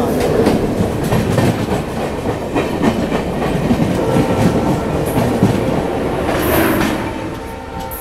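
Rail noise from a moving train heard at an open coach door: wheels clattering over rail joints amid the rush of another train passing close by on the next track. The noise eases off near the end as the other train's last coach goes by.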